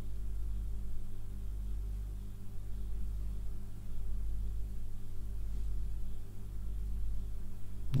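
Ambient background music: a steady low drone with gentle swells.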